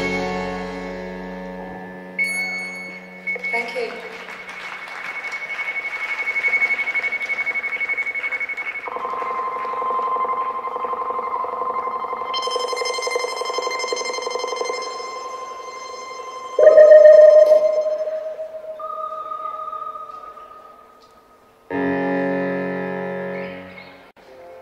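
Live electronic pop band playing sustained keyboard and effects drones: held tones that shift pitch every few seconds, the loudest a sudden note about two-thirds of the way through. After a brief near-silent gap, a short chord sounds near the end and fades.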